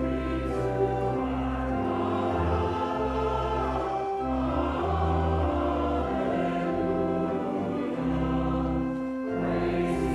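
Voices singing with organ accompaniment, in sustained chords.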